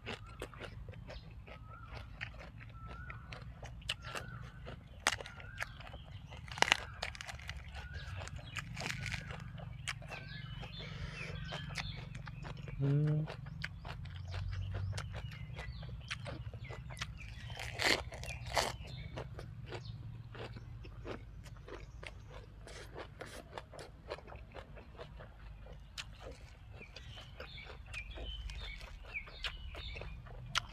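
Close-up chewing of red ant egg salad wrapped in raw leafy vegetables: a steady run of crisp crunches and wet mouth clicks, with a few louder bites.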